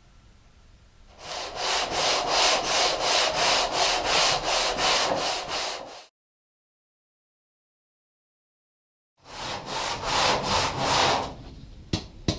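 Hand sanding of body filler on a steel car door panel: rhythmic back-and-forth strokes, about four a second, in two runs broken by a few seconds of dead silence.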